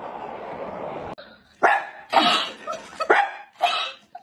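A steady noisy hiss stops abruptly about a second in. Then a dog barks four times in quick succession.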